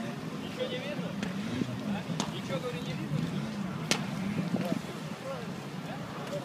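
Indistinct chatter of people talking, with no clear words, and two sharp clicks, one a little after two seconds in and one near four seconds.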